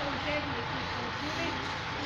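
Indistinct voices of people talking, with no words made out, over a steady rumbling noise of a train in motion.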